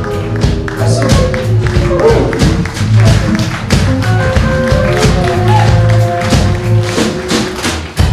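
Live band playing: drum kit hits over bass guitar and electric guitar. The song winds down and stops near the end.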